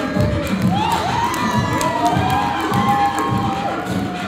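Live beatboxing through a microphone and PA, a steady beat of low kick-drum thumps, with an audience cheering and shouting over it in rising and falling calls.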